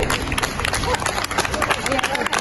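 A group of people applauding: many hands clapping at once in a dense, irregular patter, with voices mixed in among the claps.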